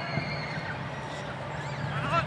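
Distant players shouting and calling out on an open soccer field, over a steady low background hum.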